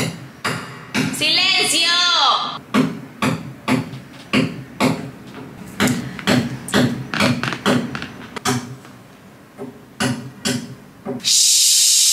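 Someone hammering: a long run of sharp hammer blows, about two a second with uneven gaps. A loud burst of hiss comes near the end.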